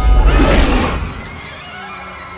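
A monster's cry sound effect over a deep rumble and music. The cry is loudest about half a second in, then everything fades down over the next second.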